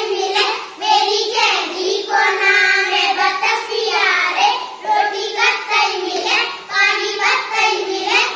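A group of children singing a jhanji-tesu folk song together in a chanting tune, continuously.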